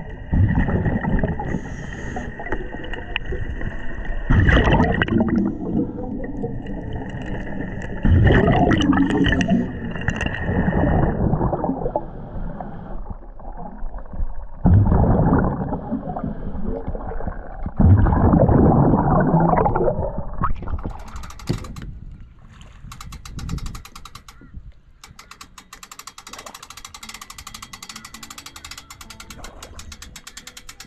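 Scuba diver breathing through a regulator underwater: a loud rush of exhaled bubbles about every four seconds, with a steady hiss on the breaths in. Later the breathing stops and a quieter, fast, even ticking takes over.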